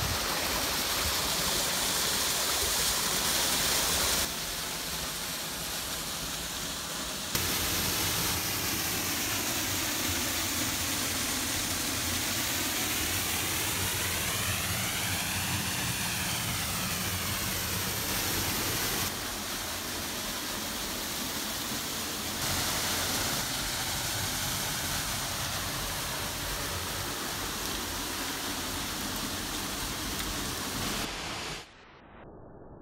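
Water of a waterfall and its creek cascading over rock ledges: a steady rushing that jumps in loudness and tone at each change of shot. Through the middle stretch the rush takes on a slowly sweeping, hollow tone.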